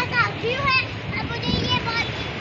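Children's voices shouting and calling out in high, excited tones while playing, in short bursts throughout.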